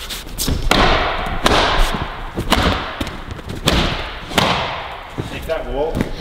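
A cloth towel slapped and scrubbed hard against a climbing-wall hold about five times, roughly once a second. Each stroke is a thump followed by a rubbing swish; the towelling is aggressive.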